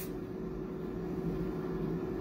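Steady background hum with one faint even tone running through it, and no sudden sounds.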